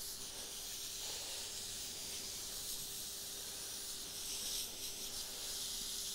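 Garden hose spray nozzle hissing steadily as water soaks the top blocks of a pile of sawdust-and-soybean-hull mushroom substrate to break them down.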